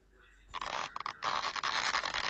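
Cartoon inflation sound effect: a noisy hiss starts about half a second in, with a couple of brief breaks near the one-second mark.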